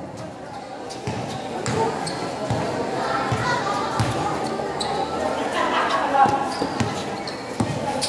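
A basketball bouncing on a concrete court in uneven thuds during live play, with background voices of the crowd.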